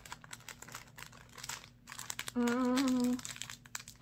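Plastic snack packaging crinkling as it is handled and pulled at in a failed attempt to open it, with a short held tone partway through.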